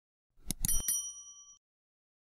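Subscribe-button sound effects: three quick mouse clicks about half a second in, then a short bright bell ding that rings for about a second and fades.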